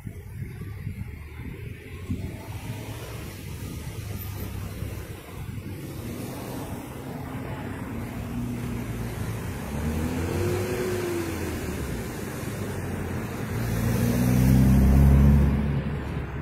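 Car engines in passing traffic, their notes rising and falling, with one vehicle driving close by and loudest about a second before the end.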